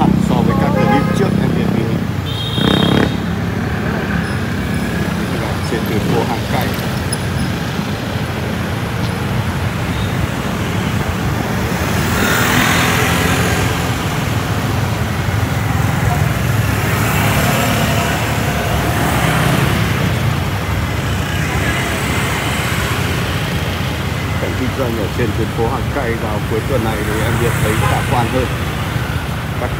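Slow city street traffic: motorbikes and cars passing close by with a steady engine rumble, mixed with the voices of people nearby. A brief high-pitched tone sounds about three seconds in.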